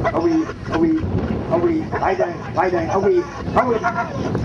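Indian Runner ducks quacking, a string of short calls about two a second as the flock is herded by border collies.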